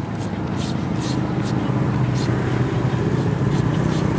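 Green papaya being shredded with a handheld serrated shredder: a short scrape with each stroke, about two a second, over the steady low hum of a vehicle engine running.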